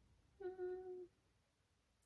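A woman humming one short, steady "mmm" for about half a second.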